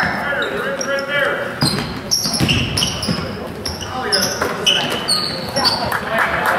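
A basketball being dribbled on a hardwood gym floor, with sneakers squeaking in short high chirps and indistinct voices calling out in the echoing gym.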